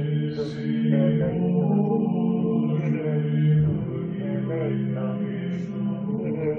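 Background music: a slow, repetitive chant sung over steady held tones.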